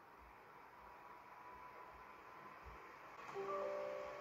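Faint room tone, then near the end a short Windows 10 system chime from the laptop's speakers: a few steady overlapping notes that come in as the User Account Control prompt opens.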